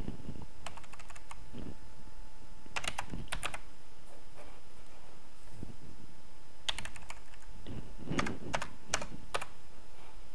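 Typing on a computer keyboard in short bursts of keystrokes: a few about a second in, a quick cluster near three seconds, and a longer run from about seven to nine seconds.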